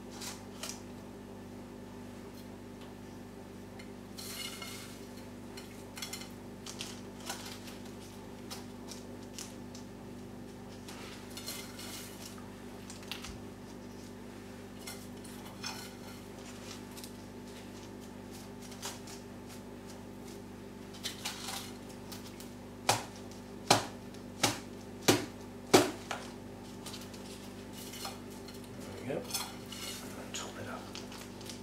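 Loose potting mix being scooped and dropped into a small plastic plant pot, with soft rustling and crunching, then the pot tapped down about five times in quick succession about three-quarters of the way through to settle the loosely filled mix. A steady low hum runs underneath.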